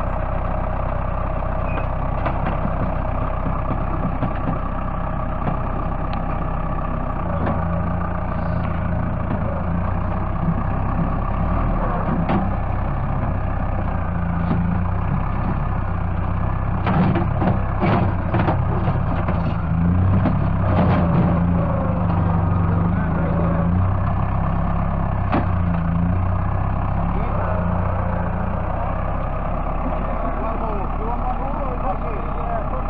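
New Holland compact tractor's diesel engine running steadily while its front-end loader bucket digs into the soil; the engine picks up under load about seven seconds in. A cluster of clattering knocks from the bucket and earth comes between about seventeen and twenty-one seconds in.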